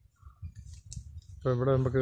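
A few faint clicks over low background noise, then a man's voice begins speaking about one and a half seconds in.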